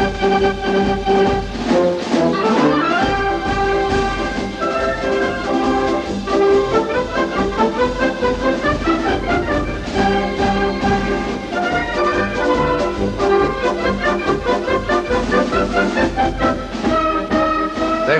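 A small military brass band of trumpets, saxophone, tuba and snare drum playing a tune to a steady drum beat. The bass comes in about three seconds in. The playing is stopped as not good enough and is blamed on a lack of rehearsal.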